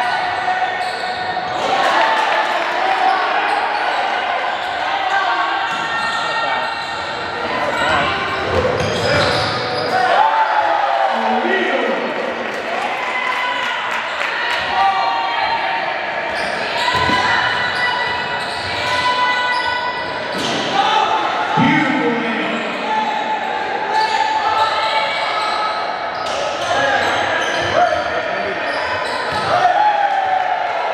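Live sound of an indoor basketball game: a basketball bouncing on the court amid players and spectators calling out, echoing in a large gym.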